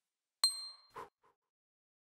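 A single bright, high-pitched ding that rings briefly and dies away, followed about half a second later by a softer, lower clink and a faint tap.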